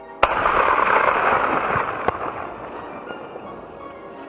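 A single shot from a Mk I Martini-Henry rifle firing a black-powder .577/450 cartridge: a loud report about a quarter second in, followed by a long echo that dies away over about two seconds. A short sharp click comes about two seconds in.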